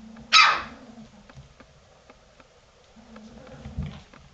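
Golden retriever puppies about three weeks old play-fighting: one short, sharp bark about a third of a second in, the loudest sound, with low puppy growls at the start and again near the end.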